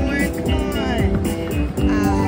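Cash Crop slot machine playing its bonus-round music and sound effects while the crop-spin reels turn, with a run of falling tones about half a second in.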